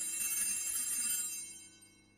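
Altar bells (Sanctus bells) ringing at the elevation of the host, the signal of the consecration at Mass. A bright cluster of high bell tones that fades away by about one and a half seconds in.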